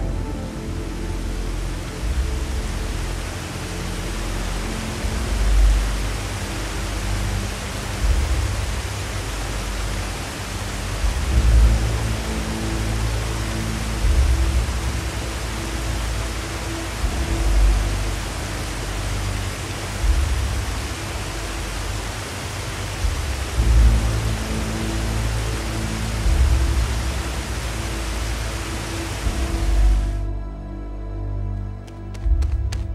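Steady rush of waterfall water, with background music underneath: low bass notes that swell every few seconds.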